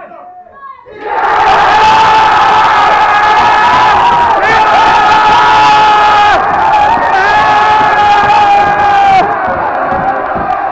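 A packed room of football fans goes from a tense hush to a sudden eruption of loud cheering and screaming about a second in, a sustained roar of celebration of a goal.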